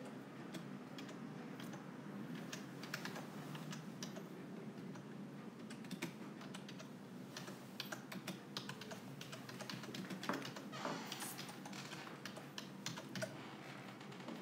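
Slow typing on a keyboard: faint, irregular key clicks with short pauses between words, closer together about ten seconds in.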